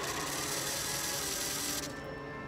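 Small electric motor of a handheld light-up spinner toy whirring steadily, cutting off just before the end.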